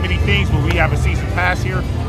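A man talking, over background music and a steady low rumble.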